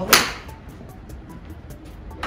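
Golf club striking a ball off a driving-range mat: one sharp crack just after the start, dying away within half a second.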